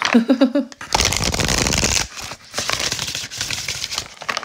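A short laugh, then a deck of oracle cards being shuffled by hand: a dense burst of riffling about a second in that lasts about a second, followed by lighter, crackly shuffling.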